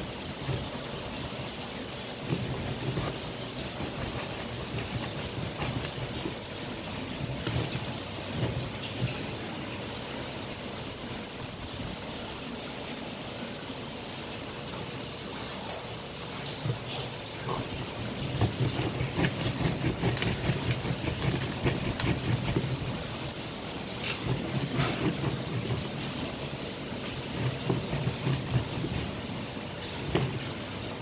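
Green plastic hand-operated kitchen grinder being pressed and twisted, scraping and crunching. The strokes grow busier and louder in the last third, over a steady hiss.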